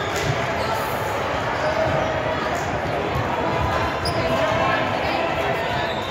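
Busy multi-court volleyball gym: volleyballs being hit and bouncing at scattered moments over a steady din of indistinct voices, all echoing in the large hall.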